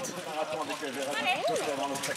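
People's voices calling out, indistinct, with one rising-and-falling call about one and a half seconds in.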